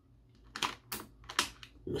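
A clear plastic blister tray being handled, giving a few short scattered clicks and crackles from about half a second in.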